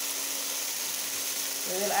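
Sausage, tomato and bell pepper sizzling in a frying pan, a steady hiss.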